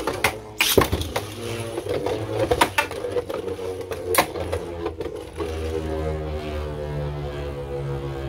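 Takara Tomy Beyblade Burst tops, Cyclone Ragnaruk and Ultimate Valkyrie, spinning in a plastic stadium, with several sharp clacks as they hit each other and the stadium wall in the first half, then spinning on more steadily.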